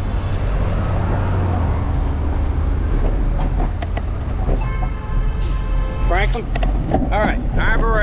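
Steady wind rumble on a moving bicycle's camera microphone, over city traffic at a busy intersection. Past the middle a steady pitched tone sounds for about a second and a half, and near the end a voice-like sound rises and falls a few times.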